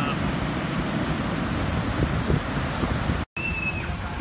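Wind rushing on the microphone over breaking ocean surf. It cuts out for a split second near the end and comes back a little quieter.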